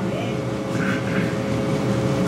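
Steady low hum of room background noise with a faint held tone running through it.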